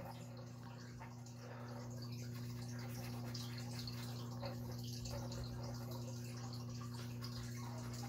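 Faint scratching of a felt-tip marker drawing on paper, over a steady low electrical hum.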